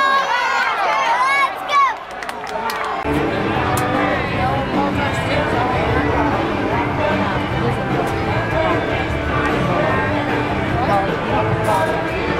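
A man's excited, drawn-out shout of "oh" that rises and falls over the first two seconds. Then, from about three seconds in, the chatter of a ballpark crowd with music playing over it.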